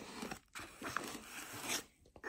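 Faint handling noises of small parts being pulled out of foam packing: light scrapes and rustles with a few short clicks, the sharpest near the end.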